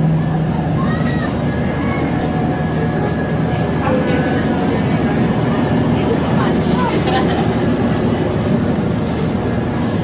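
Steady hum and rushing noise of a window air conditioner filling the room, with indistinct voices and a few light clicks over it.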